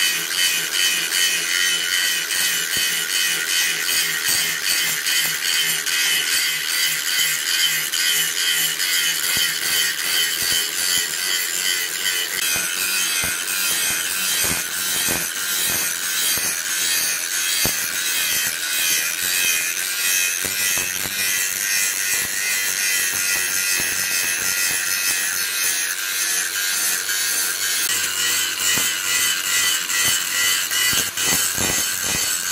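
Electric angle grinder with an abrasive disc grinding the steel axe head, running continuously with a steady high whine and gritty rasp that wavers slightly in loudness as the disc is worked across the metal.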